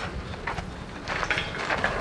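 Footsteps with a few faint clicks and knocks, over a steady low rumble of wind or handling noise.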